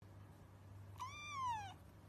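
A black-and-white kitten meowing once, about a second in: a short, high call that rises slightly and then falls in pitch.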